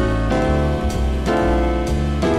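Jazz rhythm-section backing track at a medium swing tempo: piano chords over a walking bass, with regular cymbal strikes from the drums, about two beats a second.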